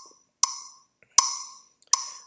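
Woodblock-style click-track beats of the Tonesavvy rhythm exercise's four-beat count-in, played back on the computer: three sharp clicks evenly spaced a little under a second apart, each with a short ringing tone that fades quickly.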